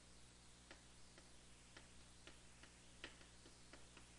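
Chalk tapping and scratching on a blackboard as words are written: about eight faint, short clicks at irregular intervals, over a low steady hum.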